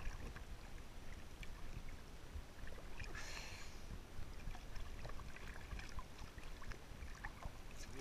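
Small sea waves lapping and sloshing against a camera held at the water's surface, with scattered small splashes and a brief hissing wash of water about three seconds in.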